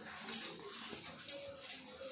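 Steel spoon stirring thick, bubbling jaggery syrup in a steel kadai, scraping the pan in quick regular strokes, about three a second. A faint high whine comes and goes behind it.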